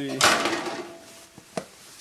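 A gloved hand knocks and scrapes against the sheet-metal housing of an air terminal unit. There is one sudden clatter with a brief metallic ring, then a single small click about a second and a half in.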